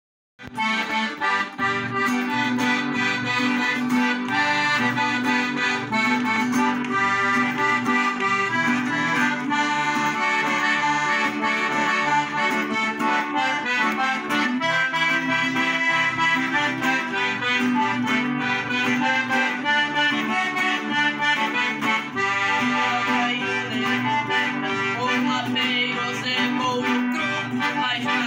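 Piano accordion playing a melody with chords, with an acoustic guitar strummed along as accompaniment. The accordion leads throughout. The music starts about half a second in, without singing.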